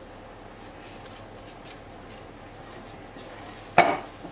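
Faint, soft handling sounds of gloved hands kneading soft dough in a glass mixing bowl. Near the end comes one sharp knock as the glass bowl is gripped and shifted on the counter.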